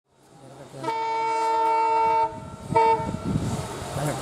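Diesel locomotive air horn: one long multi-tone blast of about a second and a half, then a short blast, over the rumble of an approaching train.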